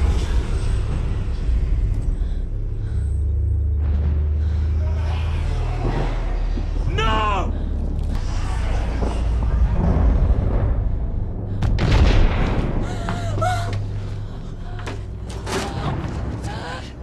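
Horror-film soundtrack: a low droning score with booming hits, and a person's shrill cry about seven seconds in and again around thirteen seconds.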